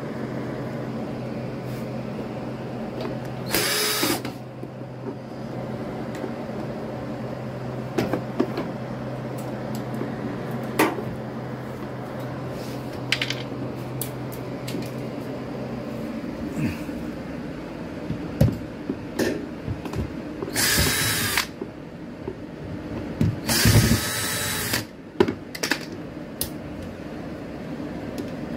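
Three short runs of a power drill, about three seconds in and twice near the end, with scattered clinks and knocks of tools on metal parts as a front-loading washing machine is taken apart. A steady low hum underneath stops about two-thirds of the way through.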